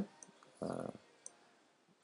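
Faint computer mouse clicks: two brief ticks about a second apart, with a short soft sound between them.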